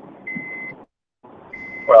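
Two high electronic beeps about a second apart, each about half a second long, over a faint rushing background noise that drops out between them.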